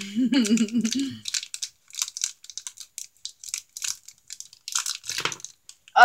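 A foil blind bag crinkling and tearing as it is cut open with scissors and handled, in short, irregular rustles.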